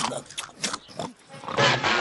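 Short grunts from a snarling cartoon bulldog, a few brief ones and then a louder one near the end.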